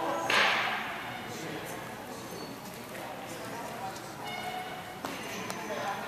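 Indistinct voices echoing in a large hall, with one short, sharp burst of noise just after the start that fades within half a second.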